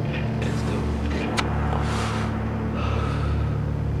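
Steady low droning hum with a single sharp click about one and a half seconds in.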